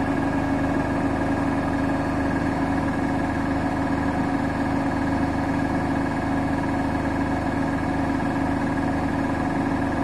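Bosch Serie 8 front-loading washing machine running in its last rinse: the drum turns with water sloshing inside, over a steady hum that neither rises nor falls.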